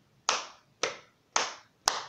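Four hand claps in a steady beat, about two a second, keeping time to start a chant.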